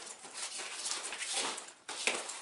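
Fabric of a nylon duffel bag rustling and swishing as it is folded and handled by hand, with a short lull near the end.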